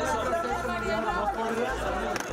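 Several people talking at once in a press scrum: overlapping, indistinct chatter of reporters crowding close around the microphone.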